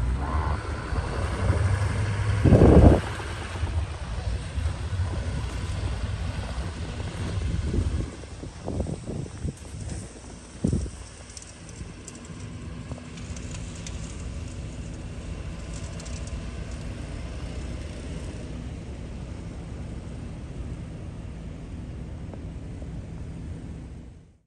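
Heavy-duty Chevrolet Silverado 2500HD pickup fitted with a V-plow, its engine rumbling as it pulls away through deep snow. There is a brief loud surge about three seconds in, and a few short thumps around ten seconds in. After that it settles to a quieter, steady low rumble.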